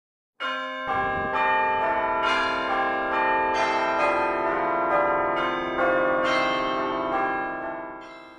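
Instrumental intro of bell-like chime notes: a melody struck about two notes a second, each note ringing on and overlapping the next, fading away near the end.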